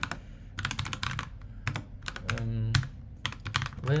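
Typing on a computer keyboard: quick runs of keystrokes in short bursts with pauses between. About halfway through there is a brief held voice sound.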